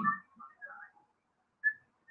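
A man's lecturing voice breaks off at the start, followed by near silence with a few faint, short whistle-like chirps, one of them about one and a half seconds in.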